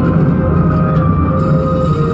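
Loud instrumental music from a mor lam stage show played through the PA, with long held notes that shift slowly over a steady low backing.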